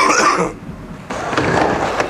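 A man's short vocal call, then, about a second in, skateboard wheels rolling on a half-pipe ramp.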